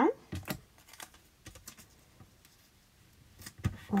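A few light clicks and taps of low-tack tape being handled and pressed down to hold a thin metal die on a card blank. The clicks fall in the first second and a half, then it goes quiet, with one more just before the end.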